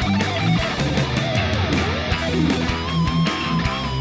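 Electric lead guitar soloing over a full heavy metal backing mix of drums, bass and rhythm guitar. Sliding, bending runs in the middle give way to a long held note with a slight waver near the end.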